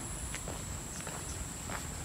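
Footsteps on a dirt path, faint and even, with a steady high-pitched drone of insects behind.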